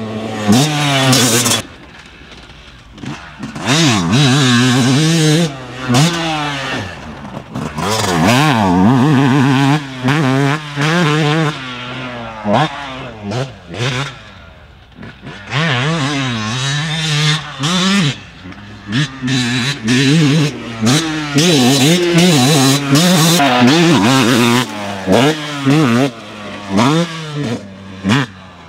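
2020 Yamaha YZ250's single-cylinder two-stroke engine revving hard under repeated throttle bursts, its pitch climbing and falling over and over as the rider works the throttle and gears, with quieter stretches about two seconds in and again around fourteen seconds.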